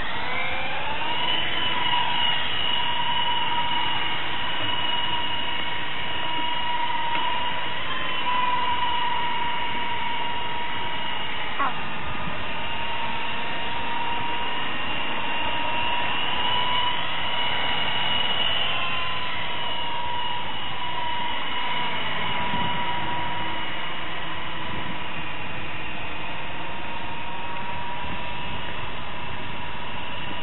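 Small electric RC helicopter motors whining as the rotors spin up over the first second or so, then holding a steady high whine with small dips in pitch as the throttle changes in flight.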